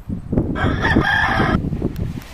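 A rooster's cock-a-doodle-doo crow laid over speech as a censor bleep. It is a held, steady call that cuts off about a second and a half in.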